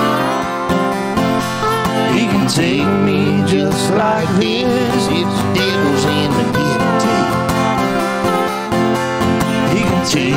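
Live acoustic country music: acoustic guitars playing with a man singing.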